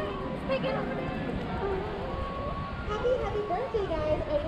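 Indistinct voices of people talking nearby, with music playing faintly in the background over a steady low outdoor rumble.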